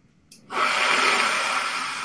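A loud, steady rush of breath with no note in it, starting about half a second in and lasting about a second and a half.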